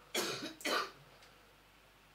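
A man gives two short coughs in quick succession within the first second.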